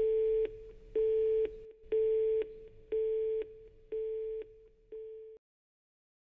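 A telephone busy tone: one steady beep about half a second long, once a second, each beep quieter than the last, stopping after the sixth about five seconds in.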